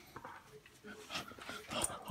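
German Shorthaired Pointer–Foxhound mix dog whimpering softly, a few short faint whines, with soft rustling as it nuzzles against the lap of the person filming.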